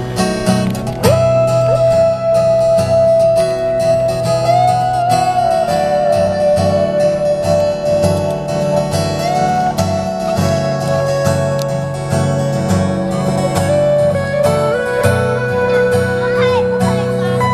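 Two amplified acoustic guitars playing an instrumental introduction: a steady picked chord accompaniment under a lead line of long held notes that slide between pitches.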